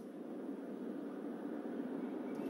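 Faint, steady road noise from an approaching Toyota Camry, slowly growing louder as the car nears.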